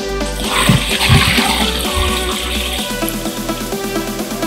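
Liquid pouring in a stream from a large plastic jug and splashing onto a pool of water beads, starting just after the beginning and stopping about three seconds in. Electronic dance music plays throughout.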